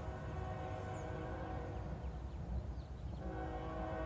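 Multi-chime locomotive air horn of a CSX freight train sounding for a grade crossing: one long blast that stops a little past halfway, then a second long blast starting near the end, over a steady low rumble.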